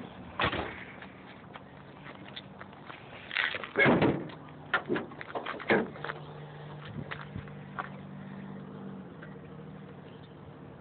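Clunks from handling a fourth-generation Camaro's door and hood: one about half a second in, the loudest about four seconds in, and another near six seconds. A faint steady hum runs underneath.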